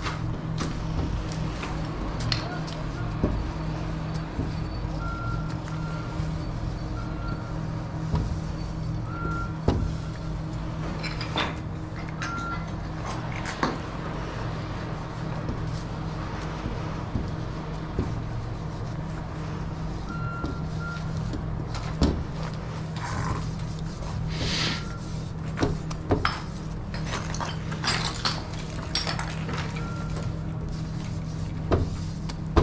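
A steady low machine hum, with short beeps at one pitch sounding irregularly, and scattered squeaks and taps of a wide paint marker drawn across window glass, thickest in the last third.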